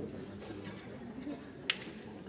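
Faint murmur of voices on stage, with a single sharp click near the end.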